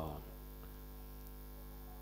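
Steady electrical mains hum, a low even drone with evenly spaced overtones, heard through a pause in speech; a man's drawn-out 'uh' trails off at the very start.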